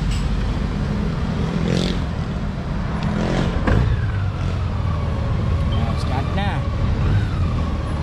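Honda Gold Wing's flat-six engine idling with a steady low rumble, amid street traffic. A pitched whine drops in pitch about halfway through and holds for a few seconds.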